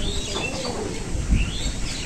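Small birds chirping in short rising calls, with a dove cooing low early on.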